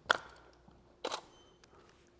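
Camera shutter released twice, about a second apart, the first click the louder: quick test shots to check the studio flash.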